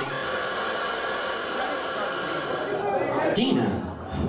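A steady, loud hiss of static that starts abruptly and cuts off suddenly about three seconds in. A brief voice follows.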